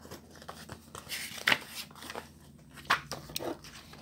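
Paper pages of a school notebook being leafed through: soft rustling with a few brief, sharp page flicks, the clearest about one and a half seconds in and near three seconds.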